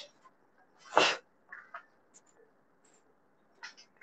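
A single short, sharp burst of breath from a person about a second in, followed by a few faint small sounds.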